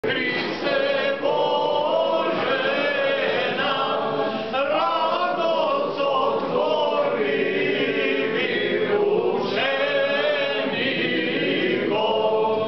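A choir singing, several voices holding long notes in slowly moving lines.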